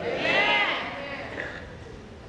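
A single high-pitched vocal cry lasting about half a second, rising and then falling in pitch, followed by low room sound.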